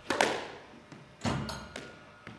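Squash ball impacts ringing in the court: a sharp crack right at the start, a duller, heavier thud a little past a second in, and a few light taps between.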